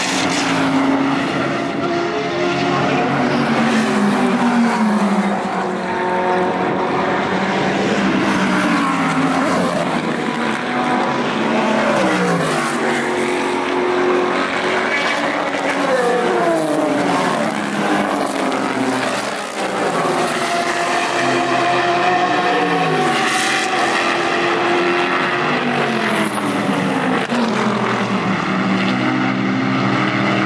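IMSA GT and prototype race cars passing one after another at full throttle. Their engine notes climb and drop back again and again as they shift up through the gears, with several cars overlapping.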